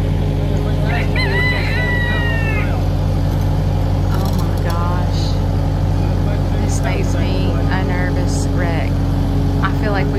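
Takeuchi TL8 compact track loader's diesel engine running steadily while it carries a load, with a rooster crowing once about a second in.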